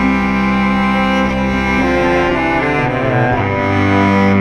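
Cello bowed in long held notes, several pitches sounding together, with a change of notes about three seconds in.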